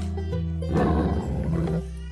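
Background music with a steady beat, over which a monster-style roar sound effect rises about two thirds of a second in and fades out just before the end.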